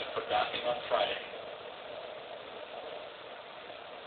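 A man's voice is heard briefly at the start, then a steady, even rushing noise with no words carries on quietly.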